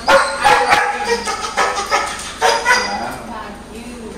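Five-month-old standard poodle puppy barking in several short bursts.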